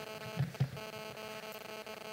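Steady electrical mains hum, with a couple of soft knocks about half a second in.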